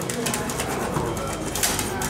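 Table football in play: a run of light clicks and clacks from the ball and the rod figures, with one louder knock near the end, over murmuring voices.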